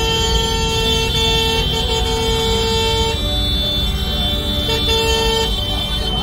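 Dense, slow street traffic: motorcycle and scooter engines running under a held vehicle horn that stops about three seconds in. A second, shorter honk follows near the end.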